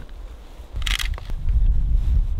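Handling noise of battery clips being fitted to a motorcycle's battery terminals: a short hissing scrape about a second in, then a low rumble that grows louder.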